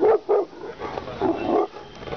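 A dog barking: two quick barks, then a longer bark about a second later.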